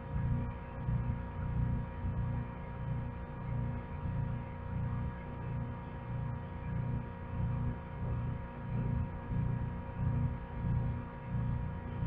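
A steady low hum that throbs evenly about twice a second, with faint steady higher tones above it.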